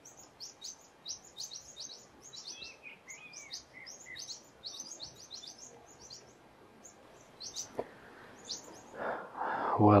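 Small birds chirping in quick, short, high notes, many a second at first and thinning out over the second half, with a few lower arcing notes about three seconds in.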